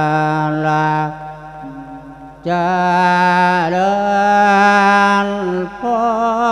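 A Buddhist monk sings an Isan-style lae sermon, a chanted, melodic form of preaching, in long held notes. About a second in, the voice drops away for over a second, then comes back strongly on a higher, slowly wavering note held for several seconds, with a brief break near the end.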